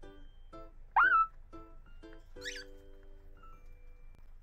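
A cockatiel gives a loud, short, upward-sliding squawk about a second in, then a higher, harsher call a moment later, an angry protest over food. Light plucked-string background music runs under both.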